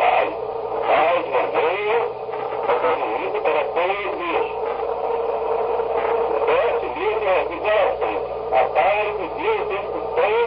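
A man speaking Portuguese on a poor-quality 1964 recording, the words mostly unintelligible, over a steady low hum.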